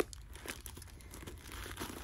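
Paper stuffing inside a handbag crinkling and rustling as hands move it, in quiet, irregular crackles.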